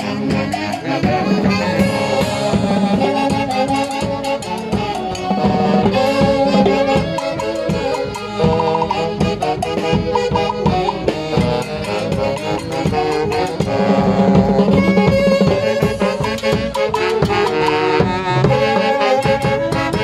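Live saxophone band, several saxophones playing a lively dance tune together over a drum kit keeping a steady beat.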